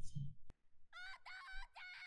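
A girl's voice in the anime cries out for her father in several broken, high-pitched, wavering calls, starting about a second in. A single sharp click comes just before them.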